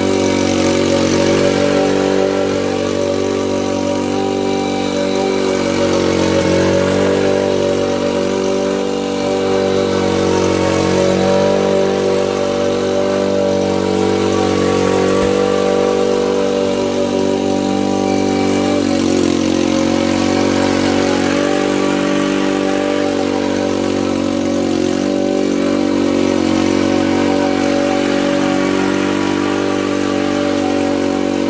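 Honda Commercial walk-behind petrol lawn mower running steadily while cutting grass, its engine note even throughout with only a slight shift about two-thirds of the way through.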